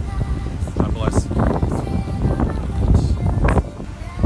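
Strong hurricane wind buffeting a phone's microphone: a loud, uneven low rumble that drops away sharply shortly before the end.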